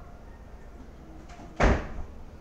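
A single loud thump about one and a half seconds in, fading out within a fraction of a second.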